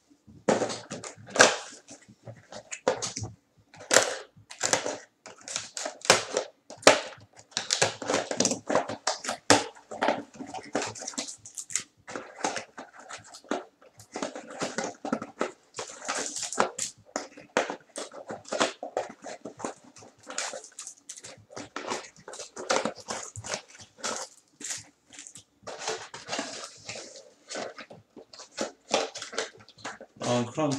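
Plastic wrapping on trading-card packs and boxes crinkling and tearing as a box is torn open and its packs handled: an irregular run of crackles with a few sharper rips.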